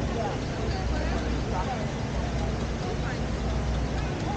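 Busy city street ambience: a steady low rumble of traffic under the indistinct chatter of people nearby.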